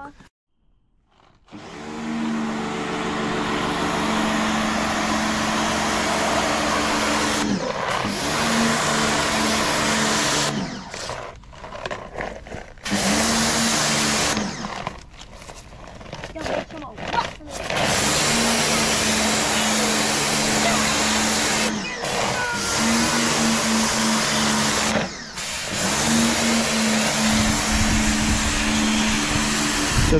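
Pressure washer running with a patio cleaner attachment spraying paving slabs: a steady motor hum under a loud hiss of water. The spray stops and starts again several times as the trigger is released and pulled.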